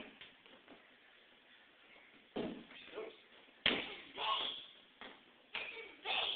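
A large inflatable exercise ball being kicked and thudding against hard surfaces: a dull thud about two and a half seconds in and a sharp bang, the loudest sound, a second later. A voice is heard between the impacts.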